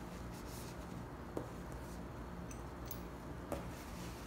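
Two light clicks about two seconds apart as small metal parts of a disassembled RC hydraulic valve are set down on paper over a wooden floor, with a steady low hum underneath.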